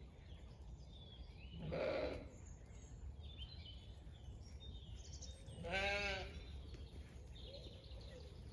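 Zwartbles sheep bleating twice: a short, hoarse bleat about two seconds in and a longer, wavering bleat about six seconds in.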